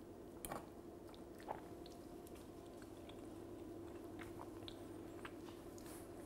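A fork clinks twice on a china plate, then a mouthful of slow-roast lamb is chewed quietly, with faint small mouth sounds, over a low steady hum.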